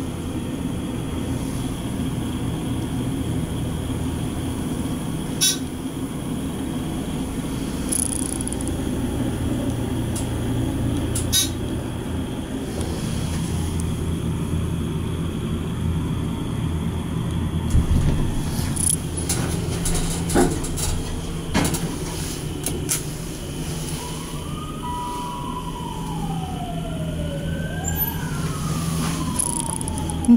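Steady hum of a Dover hydraulic elevator's pump motor as the glass car rises, with a few sharp clicks. Over the last several seconds a fire truck siren wails, its pitch sweeping up and down.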